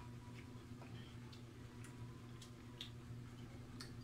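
Faint, irregularly spaced clicks of a person chewing fried chicken feet, about six in a few seconds, over a steady low hum.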